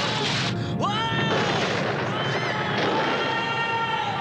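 Cartoon earthquake sound effect: a continuous loud rumble, with characters yelling and screaming over it, about a second in and again past the middle, and background music.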